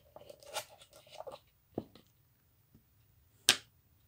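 Board-game cards and cardboard counters being handled on a table: light rustling and small ticks for the first second and a half, a short tap, then one sharp tap about three and a half seconds in.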